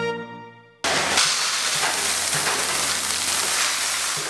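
Dried maize kernels pouring from a bag into a plastic bucket: a steady rushing rattle of grain that starts abruptly about a second in. Before it, a keyboard theme tune fades out.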